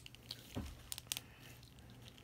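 A few faint plastic clicks and light handling noise as a Mafex RoboCop action figure is turned over in the hands.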